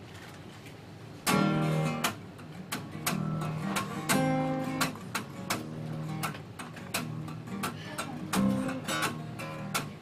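Acoustic guitar strummed, the first loud chord coming about a second in and further strums following at an uneven pace.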